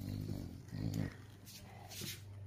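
English bulldog giving two short, low play growls, the second about a second in, while tussling over a plush toy.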